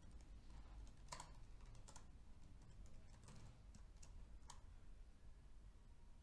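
Faint, sparse typing on a laptop keyboard: a few scattered keystrokes over near silence.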